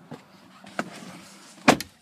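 Faint background noise with a light click a little under a second in, then a loud, sharp double click near the end.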